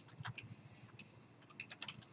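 Typing on a computer keyboard: a run of light key clicks, quickest in the second half.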